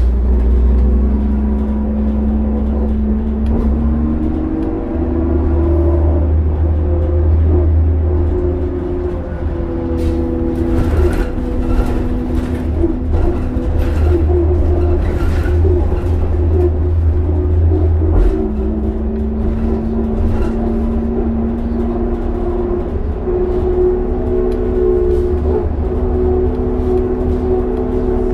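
Cabin sound of a New Flyer D40LF diesel transit bus under way: a loud low rumble and engine drone whose pitch steps up and down several times as the bus drives, with scattered light rattles in the middle stretch.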